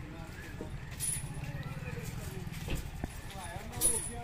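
Street sounds around a walking captive elephant: background voices over a low steady engine hum, with a few sharp metallic clinks from the elephant's leg chains as it steps.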